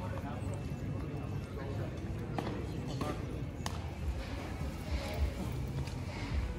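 Street ambience on stone paving: voices of people nearby, with a few sharp footstep clicks and a steady low rumble.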